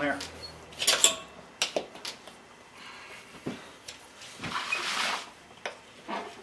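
Tire irons clicking and knocking against a spoked motorcycle wheel's rim as a stiff tire bead is pried and worked, in scattered strikes, with a short hiss about five seconds in.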